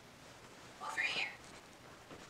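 A brief whisper about a second in, over faint room tone.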